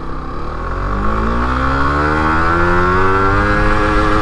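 Suzuki GSX-R150's single-cylinder engine accelerating hard in first gear, its pitch climbing steadily as the revs rise.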